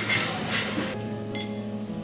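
A metal spoon clinking against a glass as fruit is scooped out, over background music. The clinking and clatter stop about a second in, leaving the music with one more light clink.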